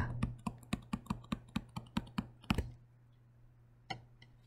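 Stylus tapping and clicking on a tablet screen while handwriting: a quick run of light clicks, about four a second, that stops a little past halfway.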